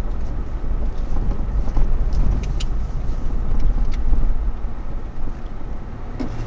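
A car driving over a rough dirt track, heard from inside the cabin: a steady low rumble of engine and tyres, with a few faint clicks and rattles.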